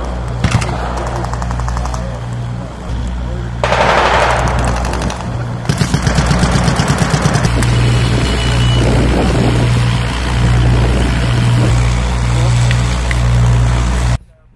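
Rapid automatic gunfire, a burst of about ten shots a second lasting a couple of seconds, starting about six seconds in, over a steady low engine hum. There is a loud rush of noise around four seconds in.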